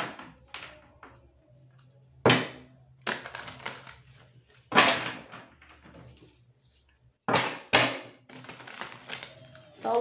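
A deck of tarot cards being shuffled by hand: short, sharp papery snaps and brushes at irregular intervals, several seconds apart.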